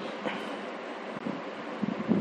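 Steady background hiss with no speech: the room and recording noise heard in a pause of the lecture.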